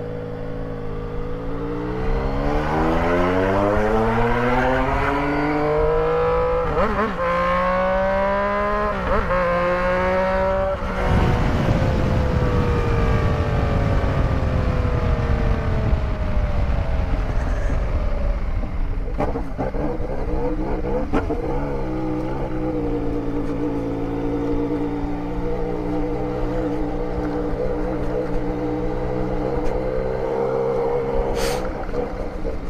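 Yamaha Tracer 900 GT's inline three-cylinder engine pulling up through the gears, its pitch rising with two short breaks for upshifts. Then comes a loud rush of wind over the microphone at speed, and the engine note falls as the bike slows. From about 22 seconds in it runs steadily at low speed.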